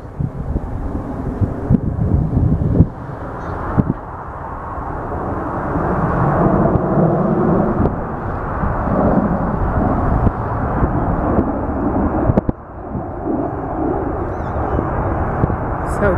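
Jet engines of a four-jet aerobatic formation, a steady noisy roar that grows louder from about four seconds in. A few short knocks come in the first four seconds.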